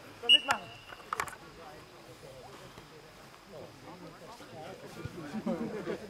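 A referee's whistle blown in one short, sharp blast about a third of a second in, with a few knocks around it, followed by scattered voices of players and spectators calling on the pitch.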